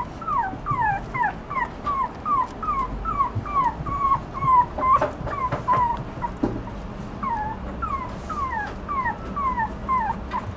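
Toy poodle puppy whimpering without a break: short, high, falling whines, about three a second. A few sharp clicks come around the middle.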